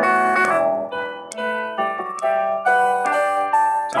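Piano accompaniment starting abruptly, with slow chords and melody notes struck about every half second and ringing over one another.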